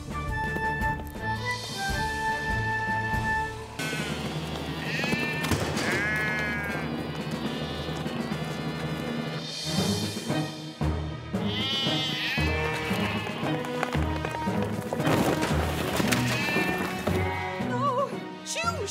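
Background music with sheep bleating several times over it, mostly in the middle and later part.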